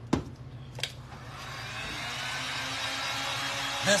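A couple of sharp clicks, then a handheld heat gun switches on: its fan spins up with a rising whine and settles into a steady blowing whir as it dries wet paint.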